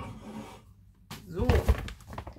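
A single sharp knock as a packet is put away on the kitchen counter, followed by a short rustle.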